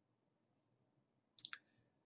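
Near silence, broken by two brief clicks close together about one and a half seconds in.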